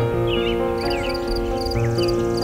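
Soft instrumental piano music with held chords, layered with nature sounds: birds chirping in short sliding calls and a small high triple chirp repeating about twice a second.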